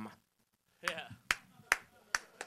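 Finger snaps keeping a steady beat, a little over two a second, starting about a second in.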